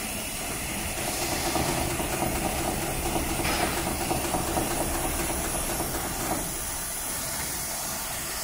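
HighTex 733-30 extra heavy duty long-arm lockstitch machine sewing through a thick stack of layered fabric: its needle bar, oscillating shuttle hook and alternating presser feet run in a fast, even rhythm from about a second in, then stop about seven seconds in.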